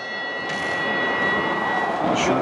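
A struck bell ringing on with one clear high tone and fainter overtones, dying away near the end over hall noise: the timekeeper's signal ending the bout.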